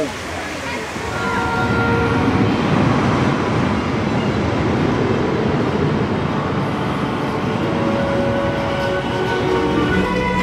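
Wooden roller coaster train rumbling along its track, building up about a second in and holding as a steady, loud rumble.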